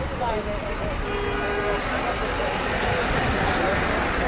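Busy roadside street noise: a steady rumble of traffic with voices of a crowd of men talking in the background, and a short vehicle horn toot about a second in.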